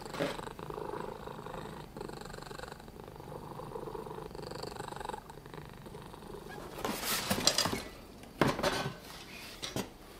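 A cat purring steadily for about five seconds, then the rustle and knock of metal candle lanterns being handled in a cardboard box, in two short bursts near the end.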